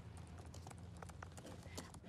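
Faint, sparse clicks, a handful over two seconds, over a low steady hum.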